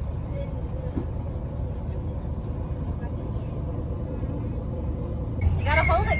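Steady low rumble of a coach bus's engine heard from inside the cabin. Voices start near the end.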